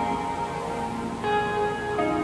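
Lo-fi hip hop music: held chord tones that change to a new chord a little past halfway.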